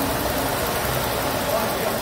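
Ford Landau's V8 engine idling steadily with its belt-driven air-conditioning compressor engaged, the system freshly recharged with refrigerant.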